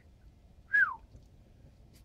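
A single short whistle, falling in pitch, just before the middle; otherwise only low room noise.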